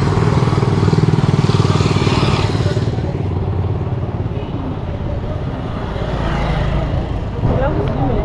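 A motorcycle taxi's engine running as it passes close by, loudest about a second in and fading after about three seconds into general street noise.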